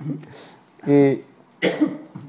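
A man's voice between words: a short held hum about a second in, then a brief throat-clearing burst near the end.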